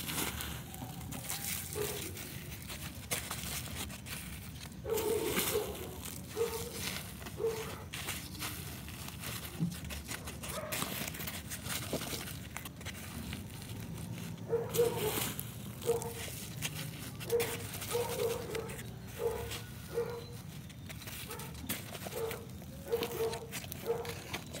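Dry rice hull and leaves rustling and crunching as a gloved hand presses the mulch around a potted plant, with handling knocks. A dog barks in short repeated bursts in the background from about five seconds in.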